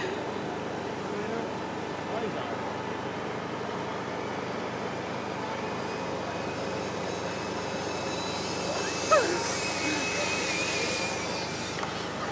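Outdoor city ambience: a steady rumble of traffic with faint distant voices. In the second half a high, steady whine swells and then fades near the end.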